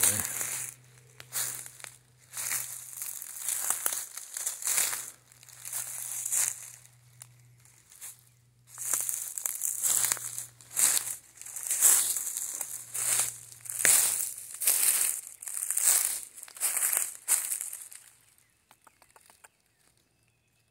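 Footsteps crunching through dry fallen leaves on a forest floor, about one step a second, with a short pause in the middle and stopping near the end.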